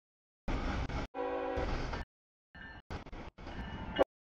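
Brief blast of a diesel locomotive's horn chord about a second in, set among short, abruptly cut bursts of passing-train noise.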